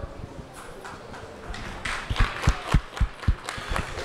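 Scattered hand clapping that starts about a second and a half in, individual claps standing out irregularly: applause at the end of a speaker's contribution.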